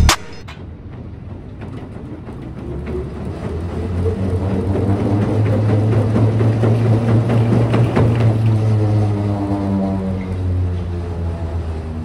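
Curved non-motorized treadmill being sprinted on: the spinning slat belt hums, rising in pitch and loudness as it speeds up, with quick footfalls, then dropping in pitch and fading as it slows.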